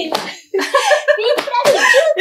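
Women talking and laughing, with two short, sharp slaps, one at the start and one about one and a half seconds in.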